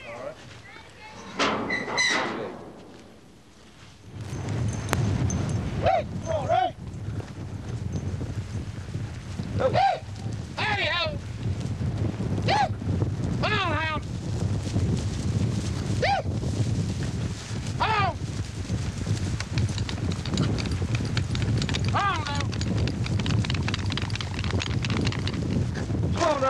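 A group of horses moving off across dry ground, their hoofbeats under a steady low rumble of wind on the microphone. From about four seconds in there is a string of short calls every second or two.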